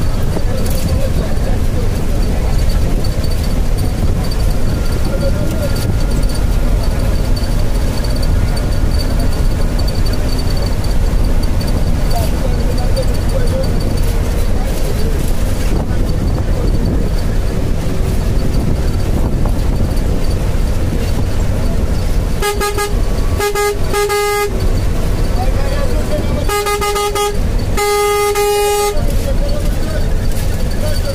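Steady rumble of engine and tyre noise from a vehicle driving on a highway, heard from inside the vehicle. A vehicle horn sounds near the end: three quick toots, then two longer blasts.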